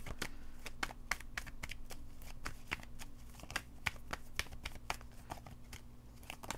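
A deck of tarot cards being shuffled by hand: a steady run of quick, short card clicks and flicks.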